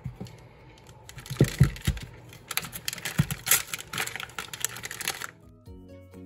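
Close handling sounds of hands working with air-dry clay and silicone molds: irregular taps, clicks and crinkles with a few soft thumps. Background music comes in near the end.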